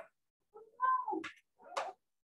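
A person's voice making a short, high sound that rises and then falls in pitch, about half a second in, followed by two brief hissing sounds.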